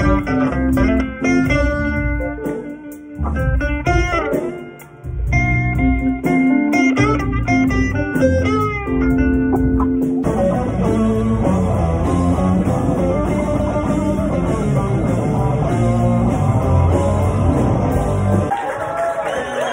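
Live rock band playing, led by an electric guitar line with bent notes over bass and drums. About ten seconds in, the sound changes abruptly to a dense, full band texture with cymbals.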